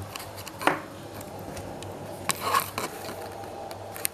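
Handling noise in a small kitchen: a few light clicks, knocks and brief rustles over a faint steady background, the sharpest click a little over two seconds in.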